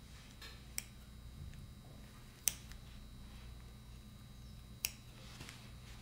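Three short, sharp clicks of metal dissecting instruments (forceps and scissors) working on a tissue specimen, spaced about two seconds apart with the middle one the loudest, over a low steady hum.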